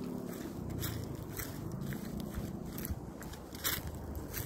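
Footsteps crunching through dry fallen leaves, a short crunch about twice a second, over a steady low rumble.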